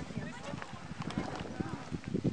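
Voices of people talking at a distance, with scattered short knocks underneath.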